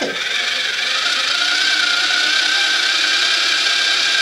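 Small electric motor of a miniature working toy blender (Faz de Verdade) running, blending chocolate cake batter: a steady whine that rises slightly in pitch over the first two seconds, then holds.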